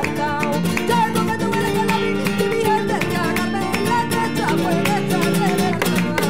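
A woman singing flamenco in a wavering, ornamented vocal line, accompanied by a flamenco guitar played with strummed chords and plucked notes.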